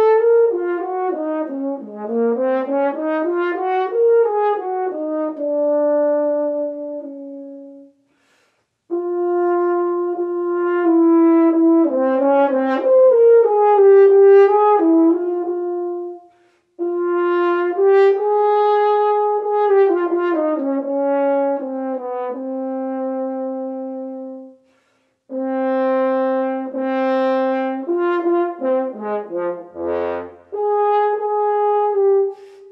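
Solo French horn playing an etude passage in phrases of flowing arpeggios and scale runs, some falling and some rising, with short breaths between phrases.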